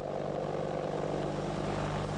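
AH-64D Longbow Apache attack helicopter hovering: a steady rotor and turbine drone with a low, even hum.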